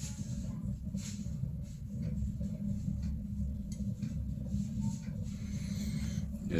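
Homemade pellet-fired vortex burner running just after lighting, a steady low hum with a couple of faint crackles.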